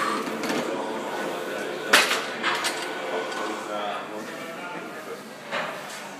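Gym weight equipment giving one loud, sharp metal clank about two seconds in, with a few lighter clinks around it, over a steady background of voices in a large room.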